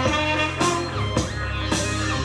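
Music: a saxophone played live over a backing track with sustained low bass notes and a steady beat of about two strokes a second.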